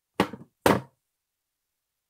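Two quick knocks about half a second apart: taps on the tablet while the worksheet page is turned.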